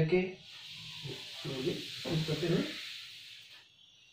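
A long, hissing breath out, about three seconds, while the body folds forward from kneeling into hare pose (shashankasana). A faint voice speaks a few times at the same time.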